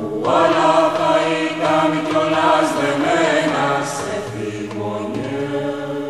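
Voices chanting together in a slow, wavering melody over a steady low drone.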